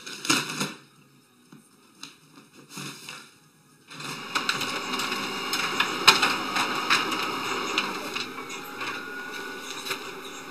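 Office printer working: quick, loud mechanical clatter from the print and paper-feed mechanism for the first second, then fainter ticking. About four seconds in the sound changes abruptly to a steadier printer whirr with a few sharp clicks.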